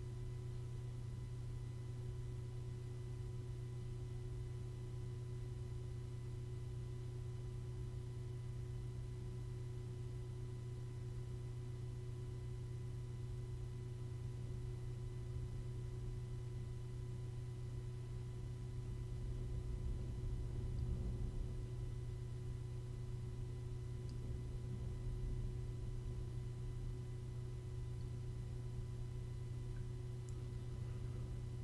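Desktop PC's cooling fans running under benchmark load: a steady low hum with a faint constant tone above it, swelling slightly about two-thirds of the way through.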